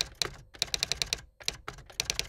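Typing sound effect: a quick, uneven run of key clicks, several a second, broken by brief pauses.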